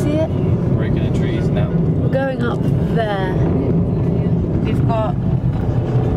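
Car driving, heard from inside the cabin: a steady low rumble of engine and road noise, with a few brief voice fragments over it.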